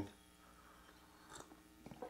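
Near silence with faint mouth sounds of a person sipping coffee and tasting it, a small one about a second and a half in.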